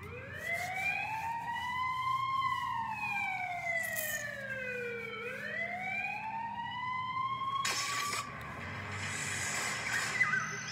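A siren wailing slowly as a sound effect at the start of a music video. Its pitch rises for about two seconds, falls for about three, then rises again. A short rush of noise comes near the end.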